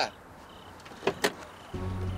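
Two quick clicks of a car door being opened, then low sustained background music comes in near the end.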